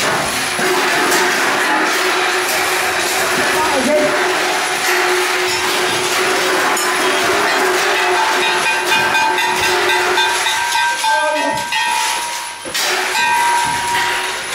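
Loud amplified noise from a live experimental performance: a dense hiss with steady droning tones held over it. The low drone gives way to a higher one about halfway through, with a brief drop in level near the end.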